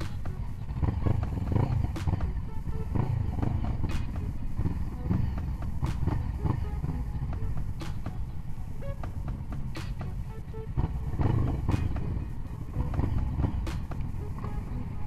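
Several motorcycle engines running close by, their low rumble swelling and easing, with music playing along with them.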